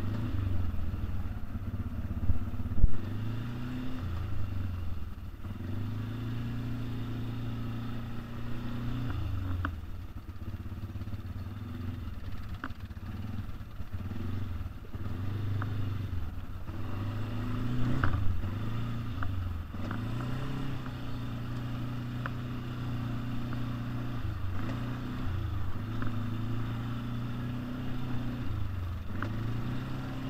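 ATV engine running at trail speed, its pitch dipping and picking up again several times as the throttle is let off and reopened. Occasional knocks and clicks are heard, the loudest about three seconds in.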